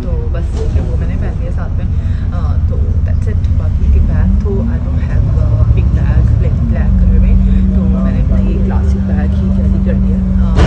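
Bus engine and road rumble heard from inside the moving bus, the engine note rising about four seconds in and then holding steady.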